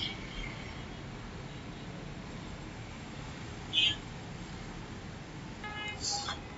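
Low, steady background noise with no speech, broken once, about two-thirds of the way through, by a single brief high-pitched chirp.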